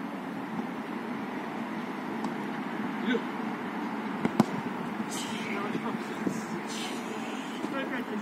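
A football kicked on an artificial pitch: one sharp thud about four seconds in, over a steady background rumble like distant traffic, with distant shouts from players.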